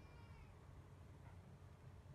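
Near silence: faint low rumble of open-air ambience, with a brief, faint high-pitched call that fades out about half a second in.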